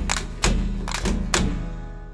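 Traditional Torres Strait Islander dance accompaniment: a few heavy drum strikes with sharp clicks, about two a second. They stop about one and a half seconds in, and the sound rings on and fades away as the dance ends.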